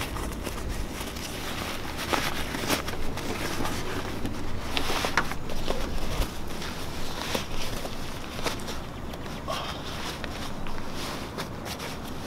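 Nylon parachute canopy rustling and crinkling as it is pressed down and stuffed into its deployment bag, with irregular crackles and small knocks as the fabric is handled.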